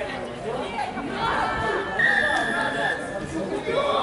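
A rugby referee's whistle blown once, a steady high note lasting about a second, stopping play at a ruck. Spectators' chatter runs underneath.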